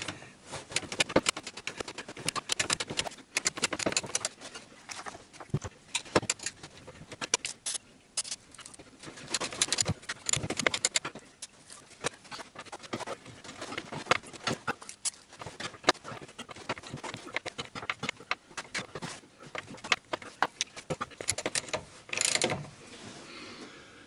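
Ratchet wrench with a 14 mm socket clicking in repeated bursts as it backs out a stiff anti-roll bar bushing bracket bolt, with metal clinks of the socket and tools in between. A short spray hiss near the end as the bolt is lubricated.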